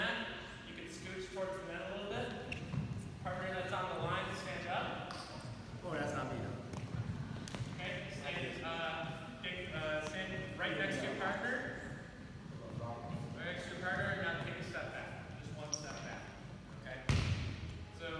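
Several voices talking at once in a gym, with volleyballs being hit and bouncing on the wooden floor as occasional knocks. One louder thud comes about a second before the end.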